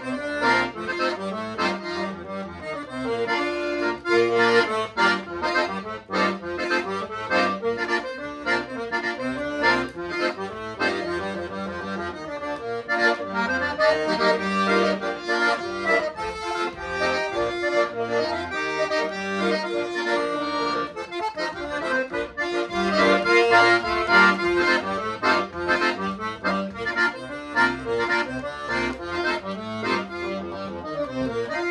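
Freshly tuned and overhauled Paolo Soprani piano accordion playing a tune without pause: a melody on the right-hand keyboard over bass and chord accompaniment from the left-hand buttons.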